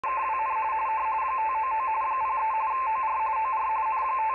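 Radio teletype (RTTY) signal from a Xiegu G90 transceiver's speaker on the 20 m band: a tone flipping rapidly back and forth between two pitches 170 Hz apart, carrying a contest exchange. It sits over a steady band hiss.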